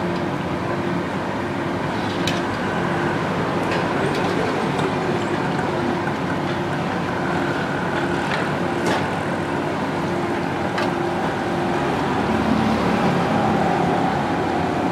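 Samosas deep-frying in a large iron kadai: hot oil sizzling steadily, with a few light metal clinks of the slotted skimmer against the pan.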